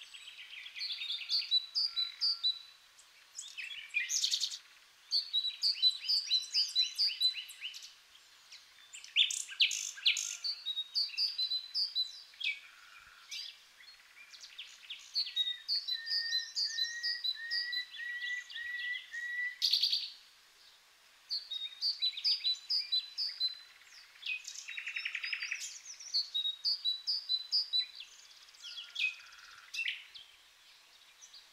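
Songbirds singing in a spring meadow: bursts of quick, high chirping phrases and rapid trills every few seconds, with short pauses between. In the middle a second, lower series of whistled notes overlaps the higher song.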